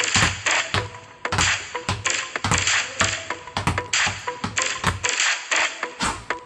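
Two basketballs bouncing on a concrete floor as they are dribbled, with sharp impacts several times a second in an uneven rhythm, over background music.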